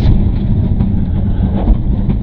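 Mitsubishi Lancer Evo IX rally car's turbocharged four-cylinder engine running under load, heard from inside the cabin as a dense, steady low rumble with road noise.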